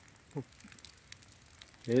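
Quiet outdoor background with faint crackles and rustling, a short falling squeak about half a second in, and a man starting to speak at the very end.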